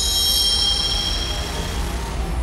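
Film soundtrack: a shrill, steady whine of several high tones over a continuous low rumble. The whine fades out shortly before the end.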